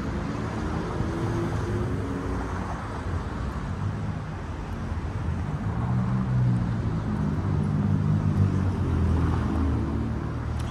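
Road traffic: a motor vehicle's engine hum grows louder over the second half, over a steady low rumble.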